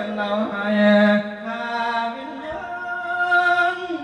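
A man singing a Thai lae, a chanted sung sermon, in long drawn-out notes that slide slowly from one pitch to the next.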